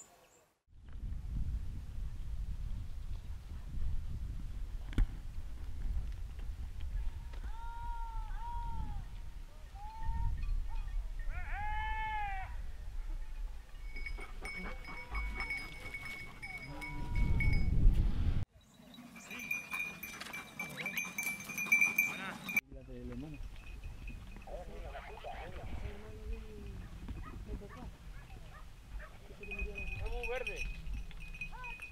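Hunting hounds of a montería pack giving short yelping cries that rise and fall in pitch, with a bell on a dog tinkling steadily for several seconds in the middle, over a low wind rumble on the microphone.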